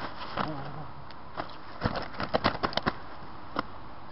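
A landed carp thrashing on the bank, its body and tail slapping hard: a quick burst of about eight sharp slaps lasting about a second, then one more slap shortly after.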